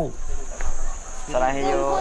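Insects chirring in one steady, high-pitched unbroken drone, with a person starting to speak over it a little past halfway.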